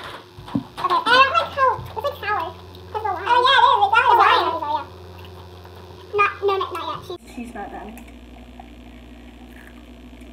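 Girls' voices talking for the first half or so, then from about seven seconds only a steady low hum of room noise.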